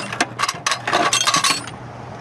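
Loose steel lathe tooling clinking against itself and a metal drawer as it is handled: a quick run of clinks with short metallic rings that stops about three quarters of the way in.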